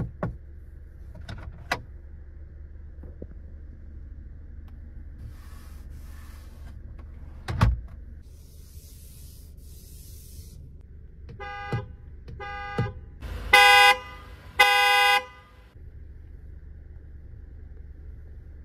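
Car horn of a Volvo V90 Cross Country sounded from inside the cabin: two short toots, then two longer honks of about a second each. Before that come a few sharp clicks and taps and two spells of brief hissing.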